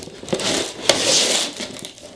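Paper packing in a sneaker box crinkling and rustling as the shoes are handled, in one burst that dies down near the end, with a sharp tap about a second in.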